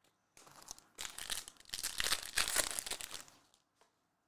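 Plastic wrapper of a Mosaic basketball card pack being torn open and crinkled: a crackling rustle that starts faintly about half a second in, grows louder after a second and stops just past three seconds.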